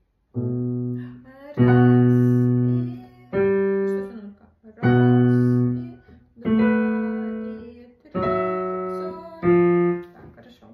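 Digital piano playing a slow minuet passage: seven chords of a bass note under a melody note, struck about every one and a half seconds, each ringing and fading before the next.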